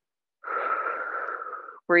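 A woman's long, audible breath through the mouth, a steady airy hiss lasting about a second and a half that slowly fades.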